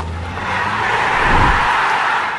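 Logo-sting sound effect: a rushing whoosh over a low hum, swelling to its loudest about a second and a half in.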